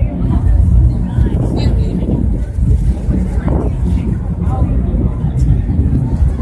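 Wind buffeting the phone's microphone, a loud, steady low rumble, with faint voices in the background.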